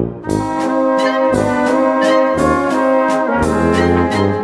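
Traditional Bohemian-style brass band playing a waltz: held brass chords and melody over low bass notes, picking up again after a brief dip at the very start.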